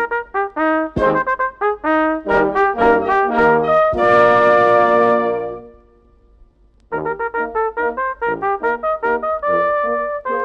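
A small wind band of flute, clarinets, saxophones, bassoon, trumpets, horns, trombone and tubas plays a brisk dance tune in short detached notes led by the brass. About four seconds in it holds a chord that dies away. After a short pause the short notes start again about seven seconds in.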